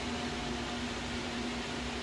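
Bank of cooling fans on a mining rig running steadily: an even rush of air with a steady low hum underneath, loud enough that it is called too loud.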